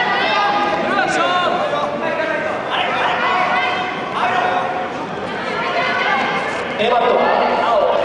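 Several voices shouting and calling out over one another in a large sports hall: sideline shouting during a wrestling bout.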